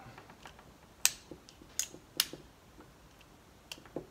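Steel 11 mm spanners clicking against a hex nut and bolt head as they are refitted and turned to tighten a transducer mount's bolt, with three sharp clicks in the first half and a few fainter ones near the end.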